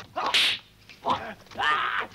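Dubbed kung fu fight sound effects: a sharp swish of a blow about a third of a second in, short shouts and grunts from the fighters, and another longer hit with a cry near the end.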